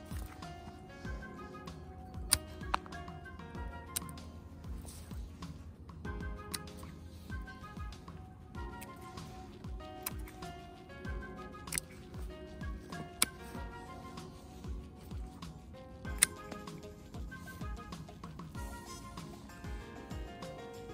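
Hand bypass secateurs snipping through woody hydrangea stems: about seven sharp cuts spread irregularly a few seconds apart, over steady background music.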